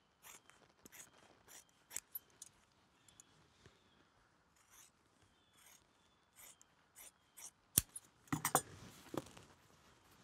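Steel scissors snipping through deer-skin leather, trimming it to the seam of a wrapped handle: a dozen or so short, separate snips. Near the end come a sharp knock and a burst of louder rustling handling noise.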